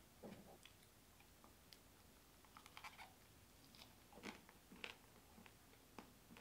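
Faint sounds of a person chewing food, with a dozen or so soft, scattered crunches and clicks.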